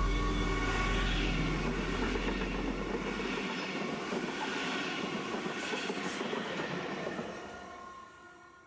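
Red double-deck regional push-pull train with an electric locomotive at the rear passing close by at speed: the rushing wheel-and-rail noise has a deep hum that stops a little past three seconds in. There is a brief hiss around six seconds, and the noise fades out near the end as the train leaves.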